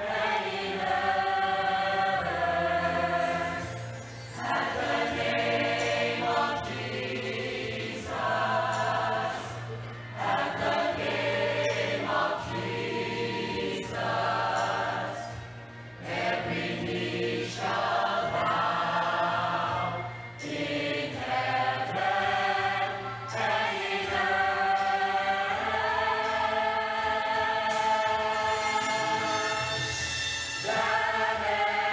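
Mixed church choir of men and women singing a hymn in several-second phrases, with short dips between them, over a steady low held note.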